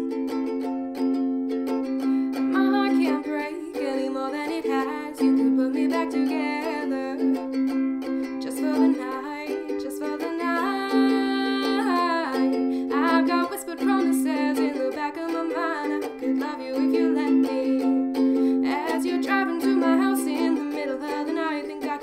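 A ukulele strummed in a steady rhythm, with a woman singing over it and holding one long note about eleven seconds in.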